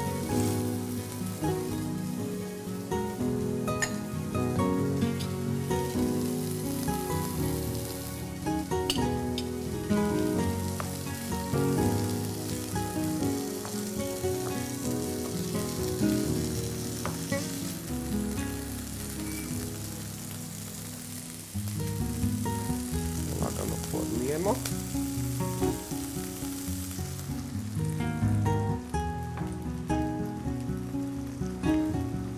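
Đuveč vegetable mix sizzling as it fries and stews in oil in a pan, over background music.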